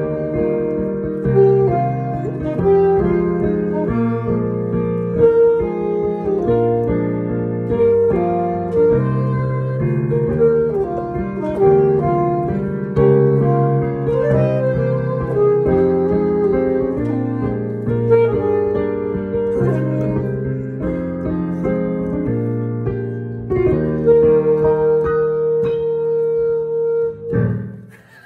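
Alto saxophone and piano playing a duet, the saxophone carrying the melody over piano chords. Near the end the saxophone holds one long note for about three seconds before the music stops.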